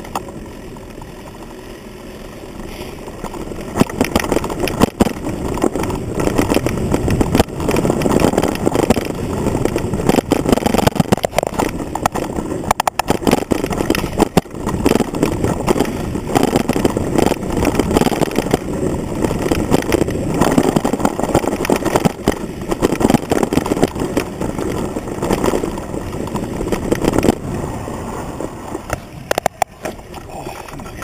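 Mountain bike clattering and rattling over a rough dirt trail, picked up through a handlebar camera mount that carries the frame's vibration: a dense rumble broken by frequent sharp knocks. It is quieter for the first few seconds and grows louder from about four seconds in.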